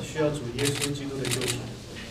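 A person speaking in a low voice, with short hissing noises about a third of the way in and again near three quarters through.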